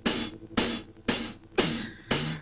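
Live rock drum kit playing a song's opening beat: cymbal-and-drum strikes about twice a second, each ringing out before the next.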